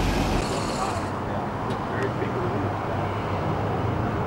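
A car engine idling with people talking in the background. The deep rumble drops away suddenly about half a second in, and a steadier, lighter engine hum carries on.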